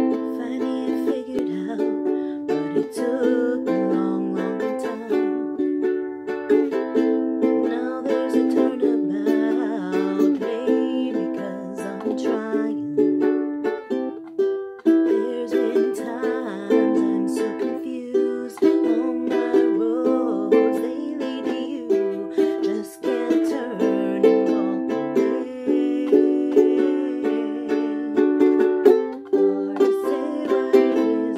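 Ukulele strummed in a steady rhythm, moving through a chord progression, with a woman's voice singing over it at times.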